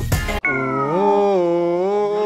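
A single long howl, held on one pitch after a brief dip and rise, coming in right after a moment of music that cuts off abruptly.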